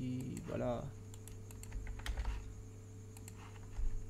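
Scattered light clicks from a computer keyboard and mouse over a steady low electrical hum.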